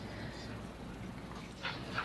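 Low room tone of a meeting room through the PA microphone, with a brief soft hiss about one and a half seconds in.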